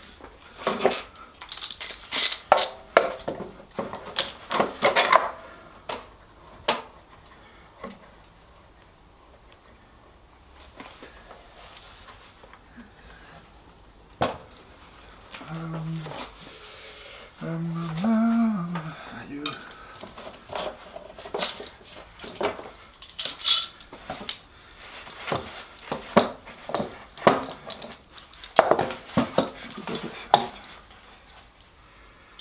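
Metal bar clamps being handled and fitted to a glued-up wooden bass body: repeated metallic clinks and clanks of the steel bars and jaws, with a quieter spell a few seconds in and one sharp knock about halfway. A brief low mumble comes from the worker partway through.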